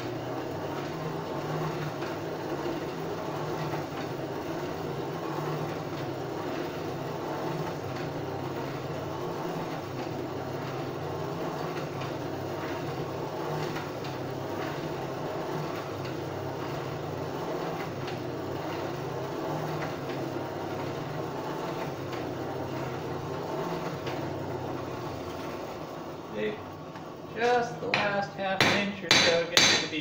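Forge fire and its air blower running steadily while the sheet-steel end heats. About 27 seconds in, quick ringing hammer blows on the anvil begin, two or three a second, as the end of 18-gauge sheet is tapered.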